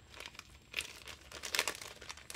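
Thin clear plastic bag crinkling as fingers work at its opening, a run of short crackles with louder clusters a little under a second in and around the middle-to-late part.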